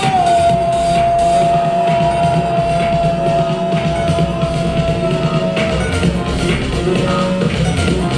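Loud live hip-hop music over a concert PA system. One high note is held steady for about the first six seconds, then stops.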